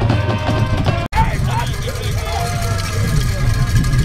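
Background music cuts off abruptly about a second in. It gives way to outdoor field sound: wind rumbling on the microphone, with distant shouted voices.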